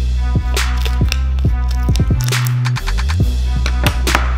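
Background instrumental beat: deep bass notes that slide down in pitch under regular drum hits, with the lowest bass dropping out briefly a little past the middle.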